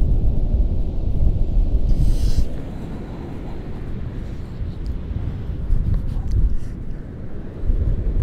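Gusty wind buffeting the microphone, a low rumble that is stronger for the first two and a half seconds and then eases off.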